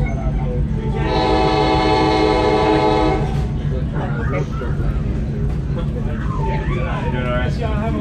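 Train horn sounding one long blast of about two seconds, starting about a second in, the signal for a grade crossing, heard from inside a moving passenger car over its steady rumble on the rails.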